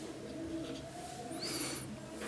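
Whiteboard marker drawing strokes, with a short high squeak near the end. A low, wavering tone runs underneath.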